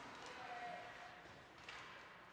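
Faint ice-rink ambience, close to silence, with a brief faint steady tone about half a second in.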